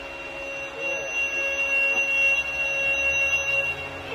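Bamboo flute holding one long, steady, pure note, entered with a short upward slide about a second in and released near the end, over a constant drone.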